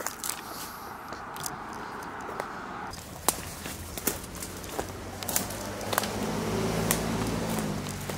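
Footsteps pushing through brush and undergrowth, with scattered sharp cracks of twigs and stems. In the second half a low, steady engine hum builds, like a vehicle approaching on the nearby road.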